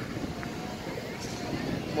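A car driving past on the street, its tyre and engine noise growing slightly louder toward the end, with the faint voices of people around.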